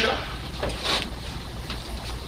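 Room tone in a lecture hall: a steady low hum with faint background noise and a couple of soft clicks or rustles about a second in, after the last word of a spoken question.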